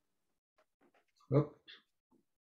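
Video-call audio breaking up on a failing internet connection: near silence cut by a few short clipped fragments, the loudest a brief snatch of a voice a little past halfway.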